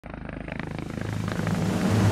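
Helicopter rotor beating steadily with the engine's low hum, fading up from silence and growing louder.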